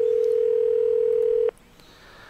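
Telephone ringback tone heard over the phone line: one steady ring of about two seconds, the called phone ringing while the call waits to be answered. It cuts off about a second and a half in.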